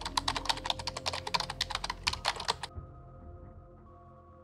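Keyboard-typing sound effect: a rapid run of key clicks, about ten a second, lasting about two and a half seconds and then stopping. It goes with on-screen text typing itself out. Soft background music plays underneath.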